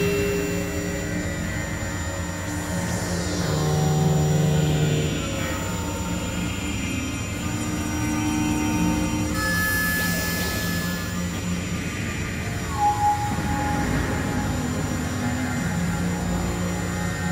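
Experimental synthesizer drone music: layered held tones shifting in pitch, with a sweep falling in pitch a few seconds in, a brief high tone near the middle and two short swells near the end.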